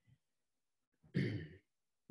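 A man's short breathy sigh about a second in, lasting about half a second, otherwise near silence.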